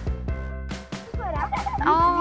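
Upbeat background music with a steady drum beat, then, about a second and a half in, a rapid warbling animal call that bends up and down in pitch.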